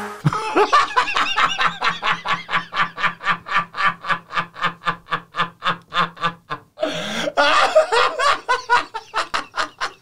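Two men laughing hard, a long run of quick 'ha-ha' pulses, about four or five a second, that swells into a louder burst near the end.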